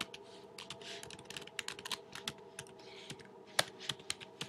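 Typing on a computer keyboard: a quick, irregular run of key clicks, with one louder keystroke near the end.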